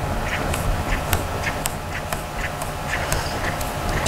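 Felt-tip marker squeaking and scratching on construction paper in a series of short strokes as a pattern of dots and squiggly lines is drawn.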